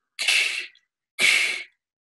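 A man's voiceless breath noise hissed through the mouth with the tongue humped as for an 'ee', in two short bursts about a second apart. It sounds the resonance behind the tongue, which comes out sounding like the rounded vowel 'capital Y' [ʏ].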